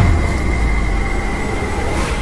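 Train running on rails: a steady rumble with a steady high whine over it, starting suddenly.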